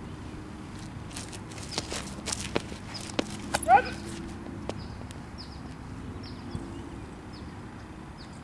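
A thrower's shoes stepping and scuffing on a concrete throwing circle: a handful of sharp clicks over the first three seconds. One short, loud call rising in pitch comes about four seconds in, and faint short high chirps follow in the second half.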